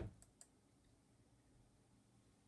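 Two short, sharp computer mouse clicks about a quarter and half a second in, advancing a slideshow, just after a dull thump at the very start; otherwise near silence.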